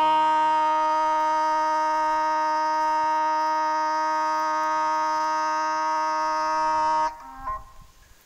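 Background brass music: a single trumpet-like note held steadily for about seven seconds, then cutting off, followed by a couple of short notes.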